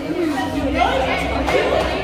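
Several people talking at once: onlookers' chatter.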